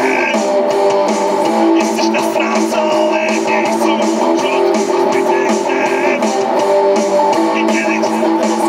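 Electric guitar strummed through a PA system, a steady run of amplified chords.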